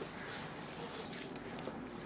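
Hands mixing semolina into thick yogurt in a stainless steel bowl: faint squishing, with a few small ticks in the first second.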